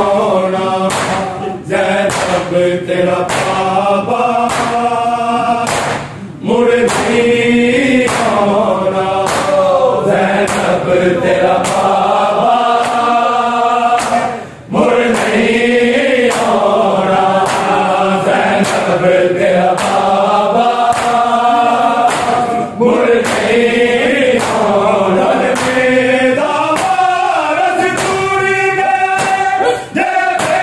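A group of men chanting a noha lament in unison, with the sharp slaps of hands beating on bare chests (matam) keeping a steady beat under the voices. The chant breaks briefly between lines.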